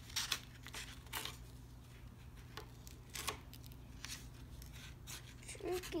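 Small purple-handled scissors snipping through paper in short, irregular cuts, each a quick crisp click.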